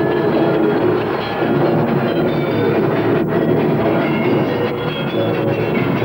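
Loud, dense live music with percussion, running on as a steady rumbling clatter without a break.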